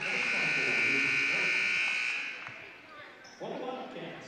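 Gymnasium scoreboard horn sounding one steady blast of a little over two seconds, signalling a substitution during a stoppage in play.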